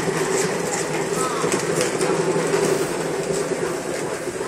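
Large cat exercise wheel turning under several running kittens: a steady rolling rumble with light clicking rattles.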